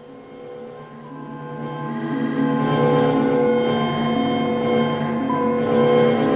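Granular-synthesis soundscape from netMUSE: layered, sustained droning tones from sampled grains. It swells from faint to loud over the first two to three seconds and then holds steady, consistent with the sound being attenuated with distance as the view comes near the structure of grains.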